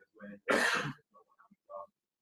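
A person clearing their throat: one short burst about half a second in, with faint murmured speech around it.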